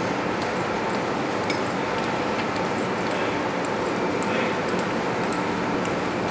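Steady rushing background noise of a carrier's hangar bay, with faint, scattered light taps of a column of sailors' shoes on the deck as they march past.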